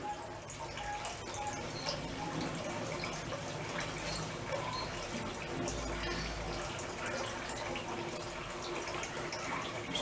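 Steady trickling and hiss from a propane-fired pot still at work, its cooling water circulating by a small pump from a bucket.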